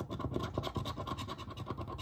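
A metal coin scraping the coating off a scratch-off lottery ticket in rapid back-and-forth strokes.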